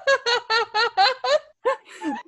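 A woman laughing in a quick run of high-pitched 'ha' pulses, about five a second, that stops after about a second and a half, followed by a few short breathy bursts near the end.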